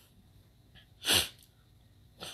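A man gives one short, stifled sneeze about a second in, with a couple of faint breaths around it.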